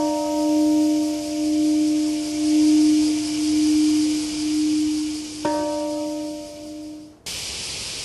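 A large bell ringing with a long humming tone that slowly pulses in loudness, struck again about five and a half seconds in. It is rung for the moment of silent prayer at 8:15 a.m. The ringing cuts off suddenly about seven seconds in, leaving a steady hiss.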